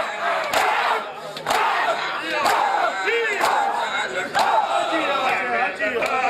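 A crowd of mourners doing matam, beating their chests with open hands in unison about once a second, each strike a sharp slap. Many men's voices shout and chant together between the strikes.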